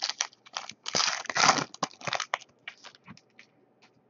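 Foil wrapper of a baseball card pack being torn open and crinkled: a run of crackling, crunching bursts, loudest about a second in, thinning to a few light clicks after about three seconds.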